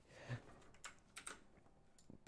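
A few faint clicks of computer keys, spread out and mostly in the second half.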